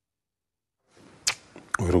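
Dead silence for about a second at a broadcast cut, then faint studio room tone with a short sharp click a little after that and a smaller click just before a man starts speaking.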